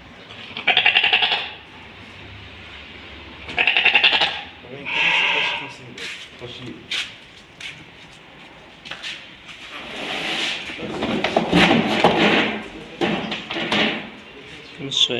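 Sheep bleating: two loud quavering calls about a second and four seconds in, then a shorter one just after. Men's voices follow near the end.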